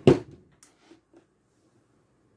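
A single heavy thump of a small 12 V battery being set down on a wooden desk, followed by a few faint light taps.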